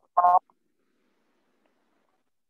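A man's short 'ah' hesitation sound near the start, then near silence for the rest.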